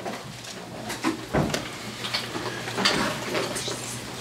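Pages of a Bible being leafed through: paper rustling with small handling clicks and a soft low thump about a second and a half in.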